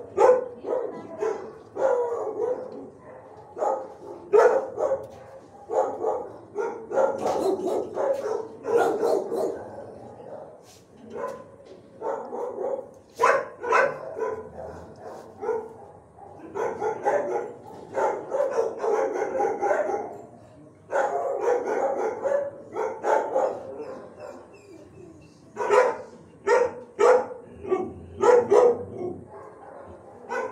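Dogs barking in a shelter kennel, in repeated volleys of short barks with brief lulls between them.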